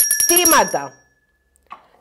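A short smartphone notification tone: a few high pitches sounding together at once, ringing for about a second and dying away, over a woman's speech.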